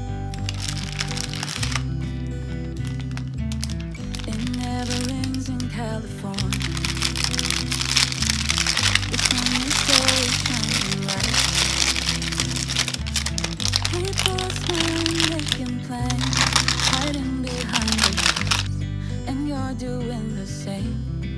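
Baking paper crinkling and rustling as it is pulled open, starting about a second in, loudest in the middle, and stopping just before the end. Under it runs a background pop song with singing.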